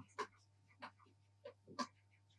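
Near silence over a low steady electrical hum, with a few faint short clicks from a stylus tapping on a pen tablet as a word is handwritten.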